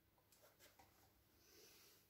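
Near silence, with a few faint clicks and a soft rustle building near the end: test leads and probes being handled.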